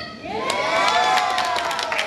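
Several voices cheering together, with hand clapping starting about half a second in.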